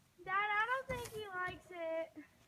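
A person's high voice in a drawn-out, sing-song tone, three long wordless phrases that glide up and down in pitch.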